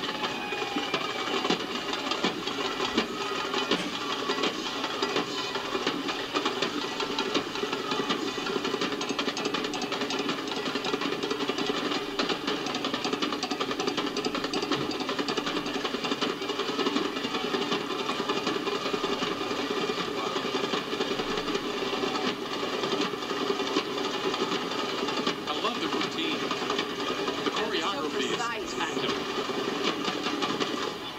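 Steady parade street sound of a drill team's drumming mixed with crowd voices, heard through a television speaker.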